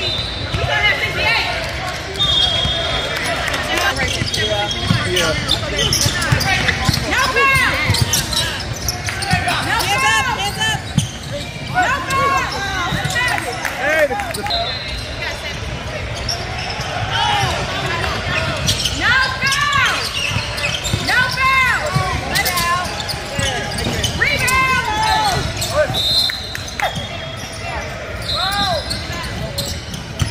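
Basketballs bouncing and sneakers squeaking on a hardwood gym floor during play, with shouts and chatter from players and spectators echoing around a large hall.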